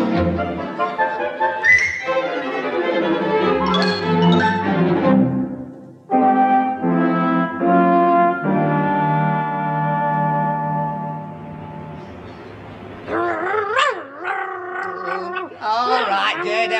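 Brass-led orchestral link music: a busy passage, then a few separate chords and a long held chord that fades out. Wavering, voice-like sounds start near the end.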